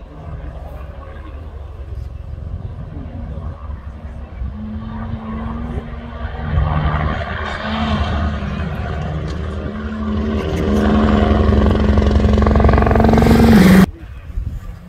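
Rally car running hard on a gravel stage, growing louder as it comes nearer, its engine note stepping up and down a few times. The sound cuts off suddenly near the end.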